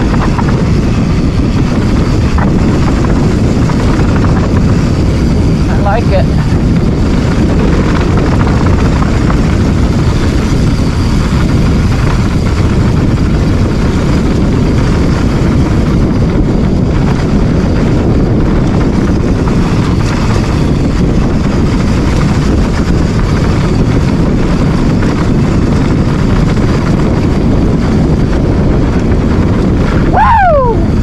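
Steady, loud rumble of wind on a handlebar-mounted camera's microphone, mixed with tyre and bike noise from a mountain bike riding a dirt singletrack.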